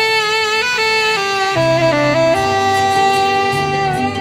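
Saxophone playing a slow melody of held notes with slides and vibrato, stepping down in pitch midway and then holding a long note, over a low accompaniment.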